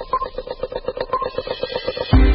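Electronic news jingle for a radio news broadcast: a fast, even ticking pulse, about ten ticks a second, with a short high beep about once a second, slowly growing louder as it builds toward the theme music.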